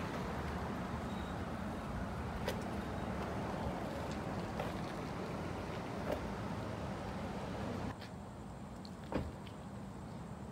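Chevrolet pickup's engine idling steadily. About eight seconds in it gives way to quieter outdoor background with a single sharp tap.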